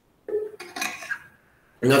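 A man drinking from a bottle: a few short clinks and knocks of the bottle within the first second or so.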